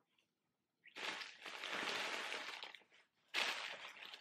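Plastic packaging crinkling and rustling as it is handled, starting about a second in, in two stretches with a short pause near the end.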